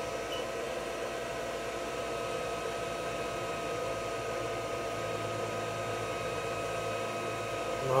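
Steady fan-like hum and hiss in a small room, with faint steady whining tones over it and no change in level.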